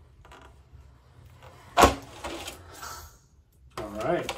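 A sharp wooden clack about two seconds in, then softer clatter and rustling: a wooden scraper block and painted panels being put down and moved about on a worktable.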